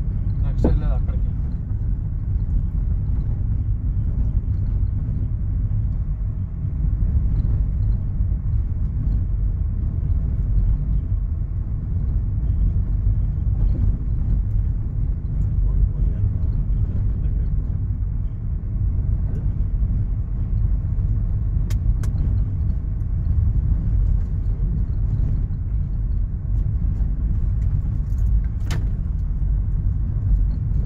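Steady low rumble of a car driving, heard from inside the cabin, with a few sharp clicks or knocks now and then.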